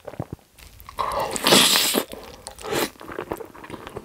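Close-miked eating sounds: wet chewing and mouth clicks, with a loud burst of noise about a second and a half in, then slurping a mouthful of rose-sauce spaghetti near the end.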